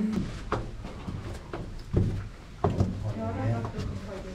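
Footsteps climbing brick stairs, a few irregular knocks, with low voices in the background.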